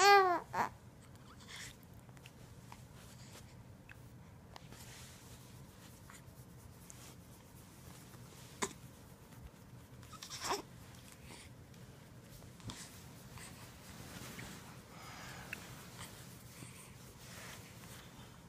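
A newborn baby's small vocal sounds: a short falling cry-like sound right at the start, then mostly quiet with a few brief soft noises, one about ten seconds in.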